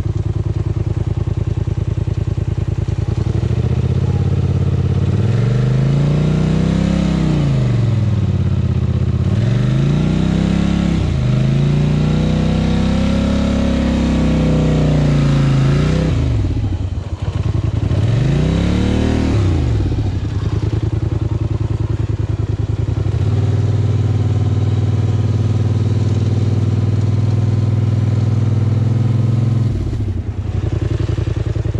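Quad bike (ATV) engine revving up and down about four times, its pitch rising and falling with each push of the throttle, then settling to a steady, lower run for the last third.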